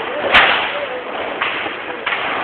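New Year's firecrackers and fireworks going off: one sharp, loud crack about a third of a second in and a lesser bang near the middle, over a steady din of more distant bangs and crackle.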